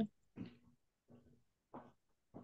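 Faint, short breathy sounds repeating evenly about every two-thirds of a second, animal-like, such as panting or grunting picked up by a call participant's microphone.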